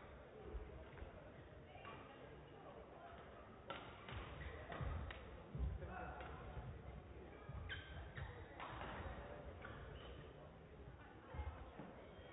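Quiet sports-hall ambience between badminton rallies: faint, indistinct voices with a few short knocks scattered through it.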